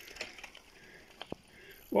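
A mountain bike rolling along a wooden boardwalk: faint ticking from the rear hub's freewheel and a couple of sharp knocks from the tyres on the planks about a second in.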